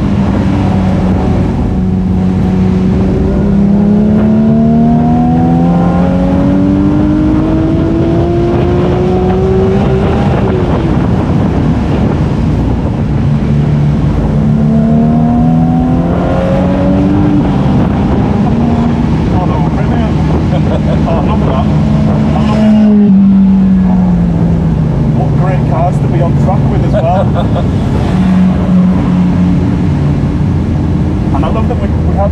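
Porsche 911 Speedster's naturally aspirated flat-six heard from the open cockpit at full throttle on track, its note climbing through the revs again and again with a drop in pitch at each upshift. Later the pitch falls away steadily as the car slows.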